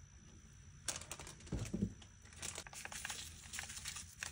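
Plastic-foil seasoning sachet crinkling as it is handled and tipped out, in scattered faint crackles.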